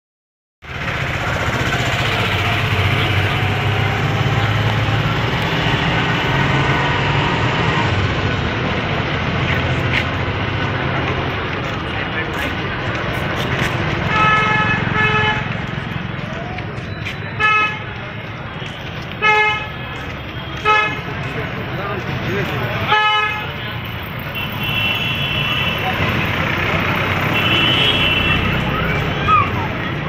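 Street traffic and crowd noise, then from about halfway through a vehicle horn sounding a string of short toots a second or two apart, with a longer blast near the end.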